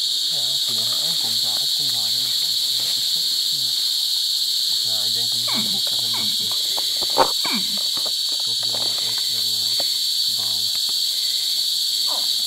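A chorus of night-calling insects, crickets or similar, making a steady high-pitched buzz. A single sharp click comes about seven seconds in.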